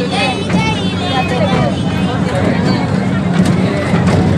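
Miniature ride train running with a steady low hum, under the high-pitched chatter and calls of people around it.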